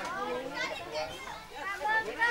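Several children's voices chattering and calling out, with no music playing.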